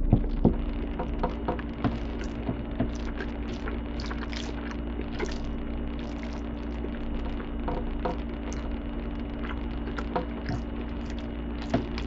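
Eating sounds: a metal fork stirring and scooping through a bowl of macaroni and cheese, with many small irregular clicks and wet chewing. A steady low hum runs underneath.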